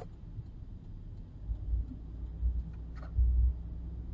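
Low rumble of a moving car heard from inside the cabin, with a few heavier low surges in the second half.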